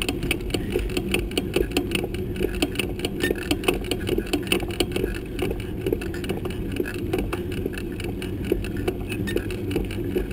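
Bicycle rolling along a paved road, heard through a camera mounted on the bike: a steady low rumble from the tyres and road, with a constant rapid, irregular clicking and rattling as the bike and mount jolt over the surface.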